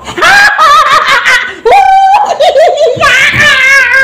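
A young child laughing and squealing loudly in high-pitched giggles during rough play, with one longer pulsing squeal about halfway through.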